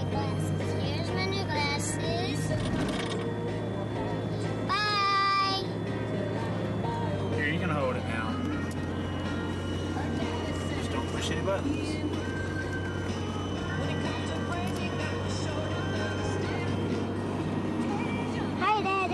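Steady low drone of a moving car heard from inside the cabin, with music playing and a child's high-pitched voice, loudest about five seconds in.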